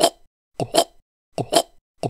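Three quick mouth-made pops, each a doubled 'p-pt', about two thirds of a second apart: a cartoon sound effect for a cat spitting out bits.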